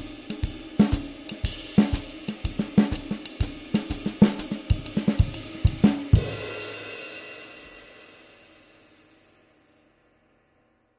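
Jazz drum kit played in time: ride cymbal and hi-hat strokes with light snare and bass drum, a few strokes a second. It stops with a last hit about six seconds in, and the cymbals ring on and fade away over the next three seconds.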